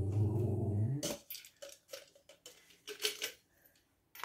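A cat's low, steady growl for about the first second, then a string of small sharp clicks and clinks as a metal knob is fitted and screwed onto a wooden drawer front.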